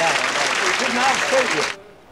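Studio audience applauding, with a man talking and laughing over it; the applause cuts off abruptly near the end.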